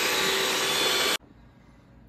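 Electric hand mixer running steadily, its beaters whipping egg whites and sugar in a stainless steel bowl toward stiff peaks; the whirring cuts off suddenly just over a second in.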